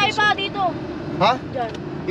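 Short snatches of people's voices over the steady low rumble of a car cabin while driving slowly.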